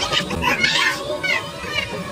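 A group of women's voices chattering, laughing and calling out excitedly over one another, with a few high, excited calls in the middle.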